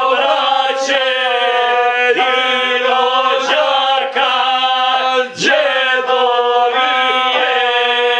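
Several men singing a Serbian folk song together in loud, full-voiced harmony, to a gusle. A steady low note holds underneath while the voices bend and slide above it, breaking briefly about four and five seconds in.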